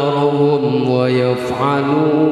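A qori's voice reciting the Quran in melodic tilawah style into a handheld microphone, drawing out a long sustained note. About one and a half seconds in the note briefly breaks and glides up, then holds again.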